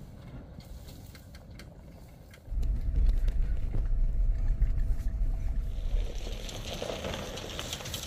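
A Rexton Sports pickup driving over a rough dirt track. At first it is faint with scattered clicks. About two and a half seconds in it becomes a loud low rumble of engine and road noise heard from inside the cab. Near the end this gives way to a steady hiss of running stream water and wind.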